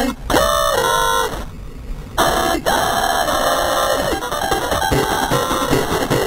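Heavily effects-processed cartoon soundtrack audio: warped, pitch-shifted tones that bend and slide under harsh noise. It drops away briefly about two seconds in, then comes back as a long held tone followed by a dense, noisy stretch.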